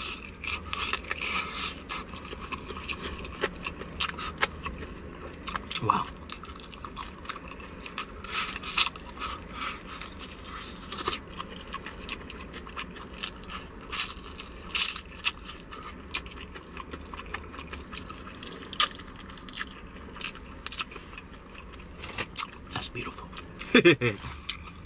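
Close-up eating sounds of KFC Extra Crispy fried chicken: crisp crunches of the breading as it is bitten, then chewing with many short crackles scattered irregularly throughout.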